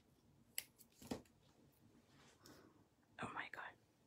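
Light clicks and rustles of a glue dot roll and card being handled. About three seconds in comes a brief soft whisper or murmur.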